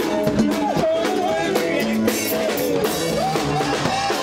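Live band music: acoustic guitars playing a melody over a steady drum beat.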